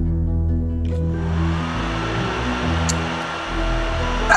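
Handheld Wahl hair dryer switched on about a second in. Its motor spins up with a rising whine, then it blows with a steady rushing hiss.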